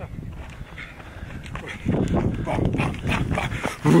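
A person's heavy, rough breathing after running uphill, louder and closer from about halfway in, with a laugh at the very end.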